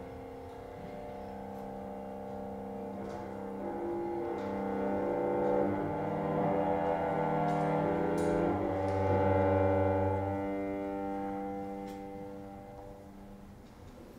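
Chamber music on bowed strings, violin and cello, holding long overlapping chords that slowly swell and then fade away near the end.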